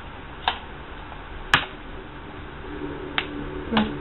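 Sharp plastic clicks of lipstick cases being handled, four in all, the loudest about a second and a half in.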